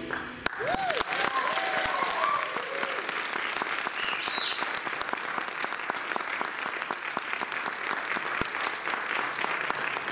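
Audience applauding from about half a second in, with whoops and cheers in the first few seconds and a short high whistle about four seconds in, following the end of a jazz band's piece.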